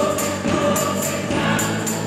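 Live band with accordion and cello playing, several voices singing together over a steady tambourine beat.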